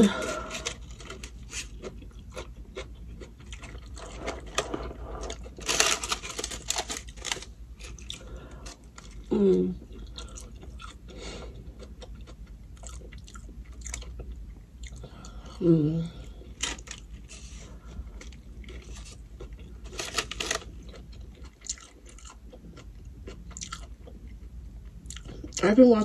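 Close-miked chewing and biting of a burrito, with many short wet mouth clicks. A throat clearing opens it, and two short hums come about ten and sixteen seconds in.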